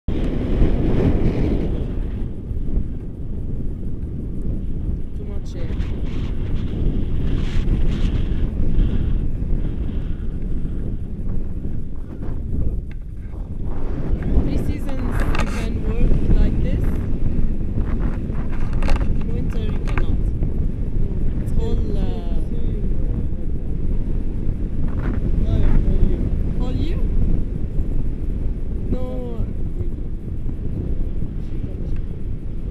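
Rushing air buffeting an action camera's microphone during a tandem paraglider flight, a constant low rumble. Short voice-like sounds break through it now and then.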